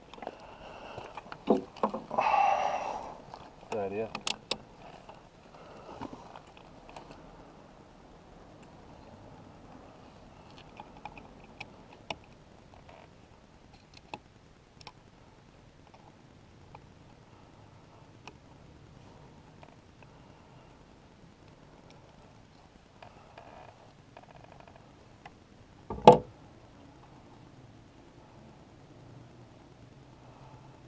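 Small clicks and scrapes of a screwdriver and multimeter probes being worked at an ATV's throttle position sensor, with the engine off; one sharp knock stands out near the end.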